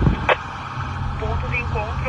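Low engine and road rumble inside a moving police patrol car, with a short click about a third of a second in; a voice starts talking about a second in.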